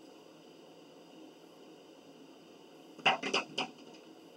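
A woman's short laugh, three quick bursts about three seconds in, over faint room hiss.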